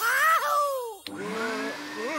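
A high cartoon-voice cry sliding down in pitch, then a click and a vacuum cleaner motor starting up with a rising whine.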